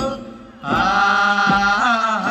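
Kaura folk song: a singer holds a long, steady chanted note over a few hand-drum strokes, after a short break in the phrase near the start.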